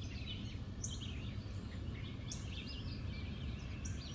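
Birds chirping, many short calls one after another, over a steady low rumble of outdoor background noise.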